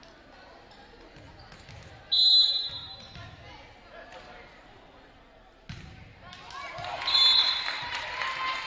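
Referee's whistle blown twice in a gymnasium, a short blast about two seconds in and another near the end, marking the serve and the end of the rally. Thuds of the volleyball being played come in between, and players shout after the second whistle.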